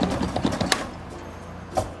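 Claw crane machine in play: the claw lowers onto the prize boxes with a few sharp clicks, the loudest a little before a second in and another near the end, over a steady low hum.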